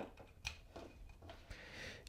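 Faint handling clicks of RCA cable plugs seated in a small adapter's jacks, one near the start and one about half a second in, with soft rustle of the cables.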